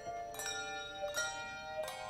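English handbells rung by a bell choir: three sets of strikes about two-thirds of a second apart, each bell ringing on so the notes overlap in a sustained, shimmering chord.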